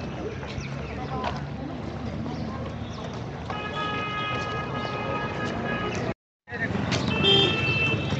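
Busy street ambience with background voices, and a car horn held for about two and a half seconds midway. The sound cuts out for a moment, then a shorter honk follows near the end.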